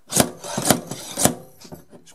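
Dent-puller tool being worked off a glued plastic pulling tab on a car door: three sharp rasping scrapes, about half a second apart, with rubbing between them.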